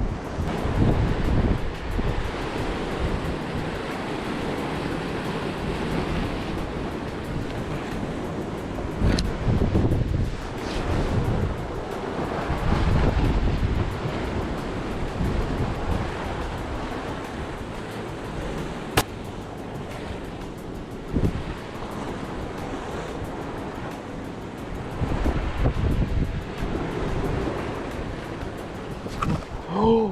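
Ocean surf breaking and washing against shoreline rocks, with wind buffeting the microphone; the wash swells louder several times as waves come in.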